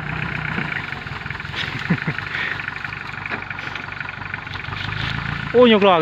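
Engine of a homemade sugarcane-spraying tractor running steadily at a low idle. A voice starts near the end.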